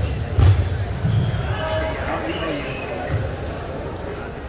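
Busy table tennis hall: a few dull thumps, the strongest near the start and about a second in, over echoing background chatter and the play at the surrounding tables.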